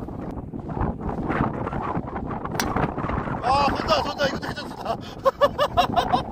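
Strong wind buffeting the microphone, a constant low rumble, with indistinct voices in the background in the second half. A single sharp click about two and a half seconds in.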